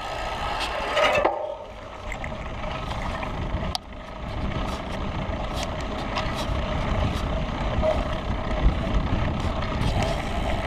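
Wind buffeting the microphone and tyres rolling as a mountain bike is ridden, moving from dirt onto pavement, with faint light ticks from the bike.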